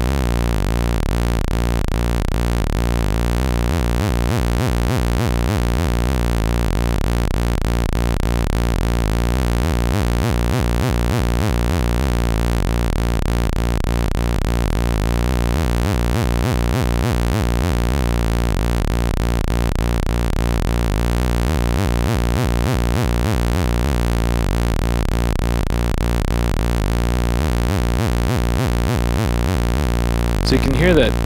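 Doepfer A-110 analogue oscillator sounding a steady low tone whose pitch wobble swells in and fades out about every six seconds. The wobble comes and goes as a slow sine LFO raises and lowers the gain of an A-131 exponential VCA that passes a second LFO to the oscillator's pitch input.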